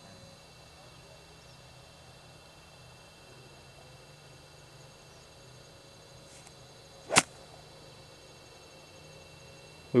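A golf iron swung through deep rough and striking the ball to chip it out: one sharp, brief swish-and-hit about seven seconds in, over a faint steady background hum.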